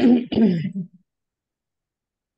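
A person clearing their throat once, lasting about a second.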